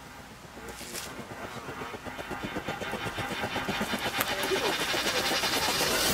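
Rapid mechanical ticking of a bicycle's freewheel as the bike coasts closer, growing steadily louder.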